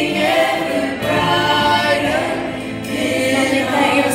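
Youth choir singing a Christmas worship song in long held notes, with lead singers on handheld microphones amplified over the choir.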